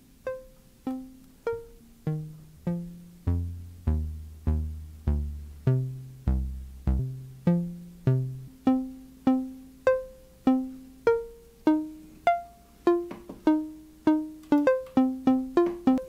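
Mutable Instruments Plaits synth module's plucked-string voice, dialled in as a mandolin-like patch with the attack all the way down, playing a sequenced melody. The notes come about every 0.6 s, each plucked sharply and dying away, with some low notes in the middle and a quicker run near the end.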